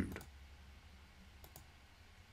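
Two faint computer mouse clicks close together about one and a half seconds in, over quiet room tone.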